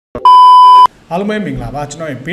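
A loud, steady electronic test-tone beep, the kind played over TV colour bars, lasting a little over half a second and cutting off sharply. A man's voice follows.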